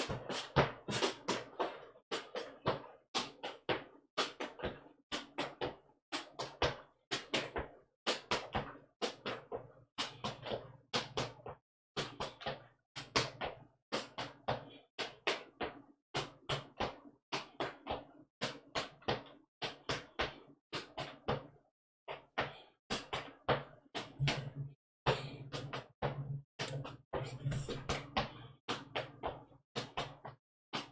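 Sneaker soles scuffing and tapping on a bare concrete floor in a steady run of quick strokes, two to three a second: clogging double toe steps, the toe brushing the floor going out and again coming back.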